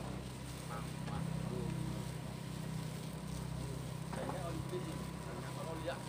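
Steady low engine hum with faint voices over it.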